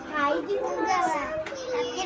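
Several children's high voices chattering and calling out at play.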